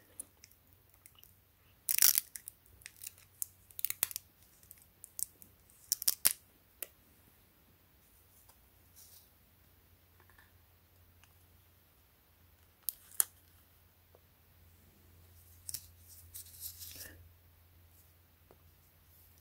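Handling noise: scattered short crackles and clicks as a sticky dust-absorber sticker is pressed onto and peeled off a smartwatch's glass, with a longer rustle near the end.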